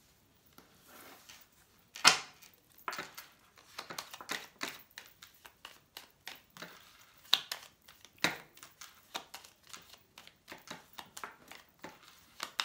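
A small baralho cigano (Lenormand) card deck being shuffled in the hands: an irregular run of papery card flicks and snaps, the loudest about two seconds in and again just after eight seconds.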